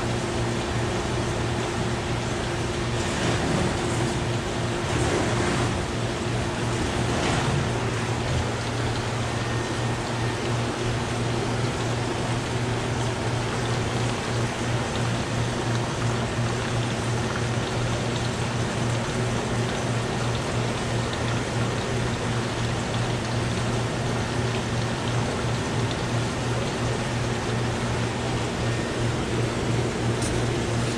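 Fish-shop tank room ambience: aquarium filters and pumps running, a steady hiss of moving water over a constant low hum.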